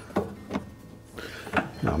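Faint handling noises from hands working on the washer's rubber door boot and hose: a couple of soft knocks early and a brief rustle, then a man's voice begins near the end.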